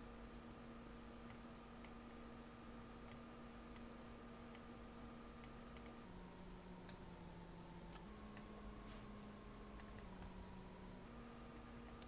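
Near silence, with faint scattered computer-mouse clicks and a faint steady hum that shifts in pitch a few times.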